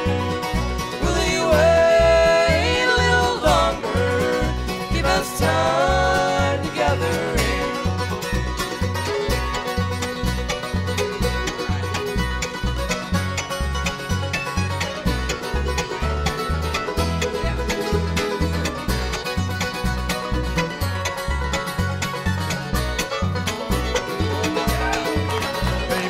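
Live bluegrass band performing a gospel song. Close harmony singing over acoustic guitar and fiddle for the first several seconds, then an instrumental break with mandolin picking, all over a steady low bass pulse.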